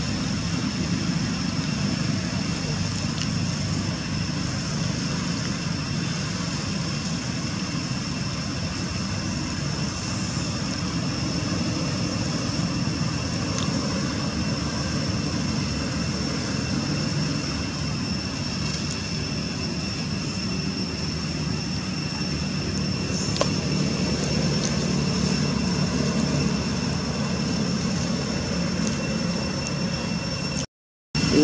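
Steady low rumble with a faint, constant high-pitched whine over it. It is even throughout, with no distinct knocks or calls.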